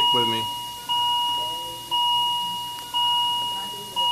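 Bedside patient monitor beeping about once a second, a steady electronic tone that starts again with each beep and fades away before the next.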